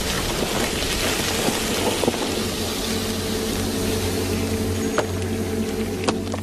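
Vinegar boiling off fire-heated rock in a steady hiss of steam, the acid reacting with the hot stone, over a steady low hum.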